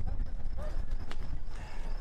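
Large fire burning shelters and trees, crackling with irregular pops over a low rumble, with one sharp crack a little past the middle. Voices call in the background.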